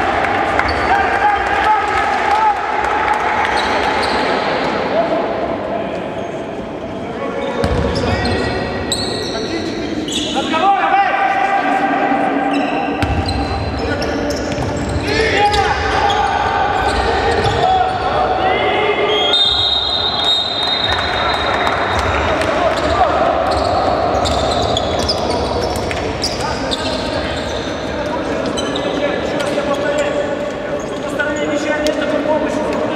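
Basketball game sounds in a large gym: a ball bouncing on the hardwood floor and players' voices calling out, echoing in the hall.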